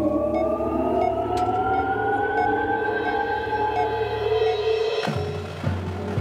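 Marching band music: a sustained chord slides slowly upward in pitch for about five seconds over a steady low drone, with faint regular ticks. About five seconds in, it breaks off into a new chord.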